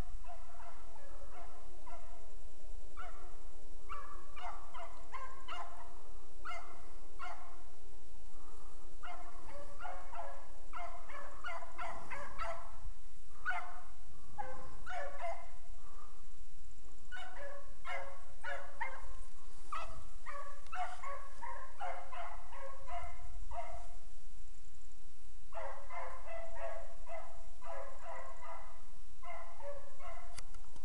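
Beagles baying in a long string of short, repeated cries as they run a rabbit's scent trail, with brief pauses about halfway and again about three-quarters through.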